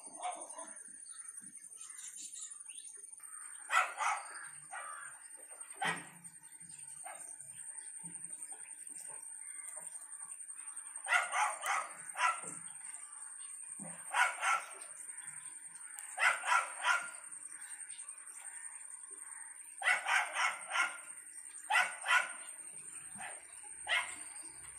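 Animal calls in about eight short bouts, spread irregularly, over a faint steady high-pitched whine.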